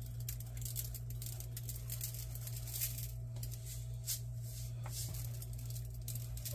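Sesame seeds sprinkled by hand over egg-washed bread dough, with a few faint light ticks as seeds land on the dough and the metal baking sheet, over a steady low hum.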